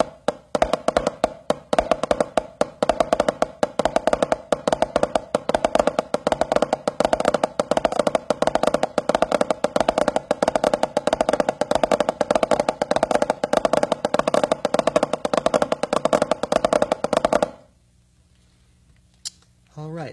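Drumsticks playing a fast, dense rudiment: a pataflafla variation with every flam replaced by a flammed ruff (a "pat-a-fluff-fluff"). It is very difficult to play and the strokes crowd together. It stops abruptly about 17 seconds in.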